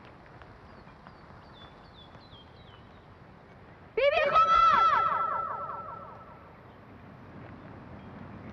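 A loud animal call starts suddenly about four seconds in: a rising cry that wavers rapidly in pitch for about two seconds and fades away. Faint high chirps come before it.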